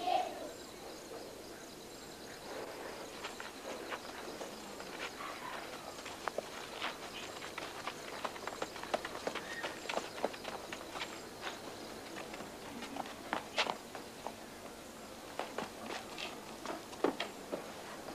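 Light, quick footsteps and scuffs of a small group of girls hurrying on a dirt path, with irregular sharp clicks and faint voices.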